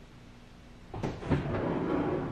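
Faint room tone, then about a second in a milk frother jug is set down on the stone countertop: two sharp knocks, followed by handling clatter.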